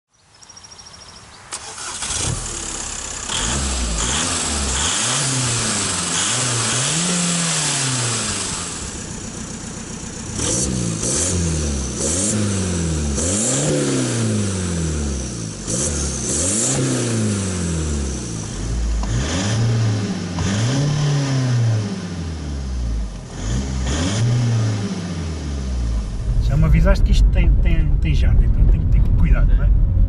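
Tuned Seat Ibiza TDI turbodiesel engine being revved while parked, its pitch climbing and falling again and again, about a dozen times. Near the end this gives way to a steadier, louder low rumble.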